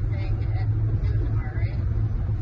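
Steady low rumble of road and engine noise inside a car's cabin at highway speed, with faint talking underneath.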